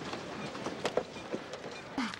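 A rattling, rolling clatter with several sharp knocks over a steady noise.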